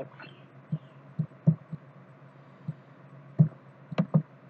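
About seven soft, irregularly spaced clicks and thumps of a computer mouse being used at a desk, picked up by the recording microphone over a steady low electrical hum.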